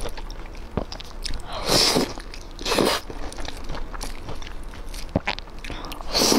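Close-miked eating: biting and chewing crunchy, chili-coated food, with two loud crunches about two and three seconds in and a few small clicks between.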